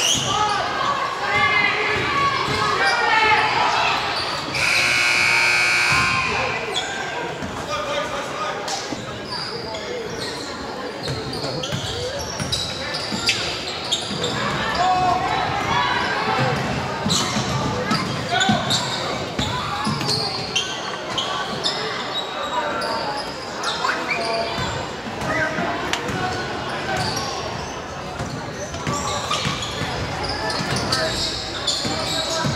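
Indoor basketball game sound in a large gym: a ball dribbled on the hardwood floor, sneakers squeaking and a crowd of spectators talking and calling out. One long high-pitched tone about five seconds in.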